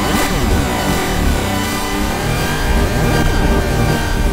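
Electronic synth sound run through the OrdinaryPhaser phaser plug-in. It gives a dense, buzzy drone with sweeping notches that glide up and down in pitch over a heavy low rumble, with a rather engine-like, revving quality.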